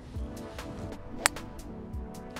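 Electronic background music with a steady beat. About halfway through, a single sharp crack: a golf driver striking the ball off the tee.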